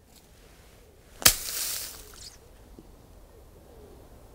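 A gap wedge striking a golf ball out of leaf litter on a forest floor: one sharp click about a second in, followed by a brief rustle of leaves and debris thrown up by the club.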